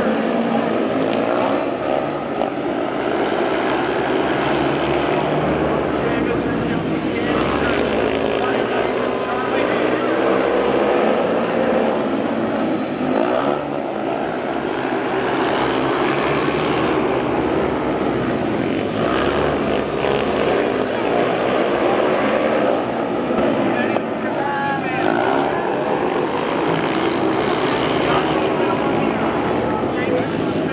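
Speedway bikes racing on a dirt oval, their single-cylinder 500 cc methanol-burning engines running hard, the pitch rising and falling as the riders power through the turns and down the straights.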